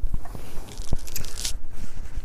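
Rustling, scraping and knocking of clothing and skin against a clip-on microphone as the man moves and rubs his upper arm. There are several sharp knocks, with a scratchy hiss about a second in.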